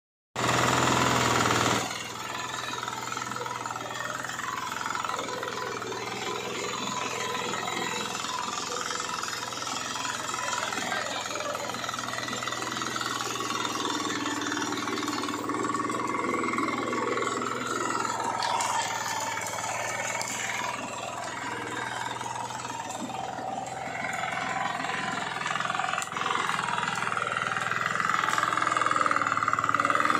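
Power weeder's small single-cylinder engine running steadily, louder for the first two seconds and rising a little again near the end.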